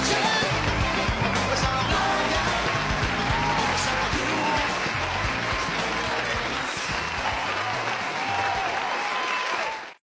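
Live pop band music in a large arena, with the crowd cheering over the amplified band; the sound fades out at the very end.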